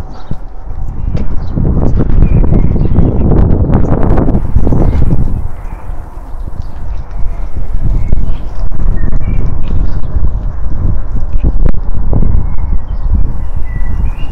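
Wind buffeting a phone's microphone in a loud, uneven rumble that rises and falls, with footsteps on paving stones.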